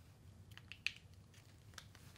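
A few faint clicks and rustles of a marker pen being handled, over a low room hum.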